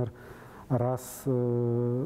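A man's voice: after a short pause, one short word, then a long hesitation vowel held on one steady pitch for most of a second.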